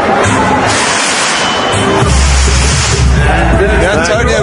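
Goal celebration in a futsal arena: loud music over the public-address system, its heavy bass coming in about two seconds in, over crowd noise and cheering.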